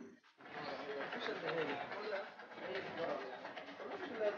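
Faint murmur of distant voices in background street ambience. It starts after a brief moment of silence.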